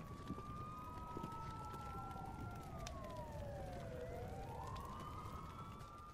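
Faint emergency-vehicle sirens wailing: two sirens slightly out of step, rising slowly in pitch, falling about two and a half seconds in, then rising again, over a low steady rumble.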